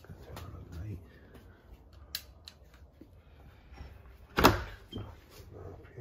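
Handling clicks and knocks in a small room, with one loud sharp knock about four and a half seconds in.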